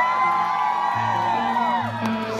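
Live band's slow ambient intro: sustained keyboard chords held under the window. Over it, audience members give long whoops that slide up, hold and fall away near the end.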